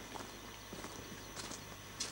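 Slow, even footsteps on dry, sandy ground with scattered leaves, about three steps in two seconds.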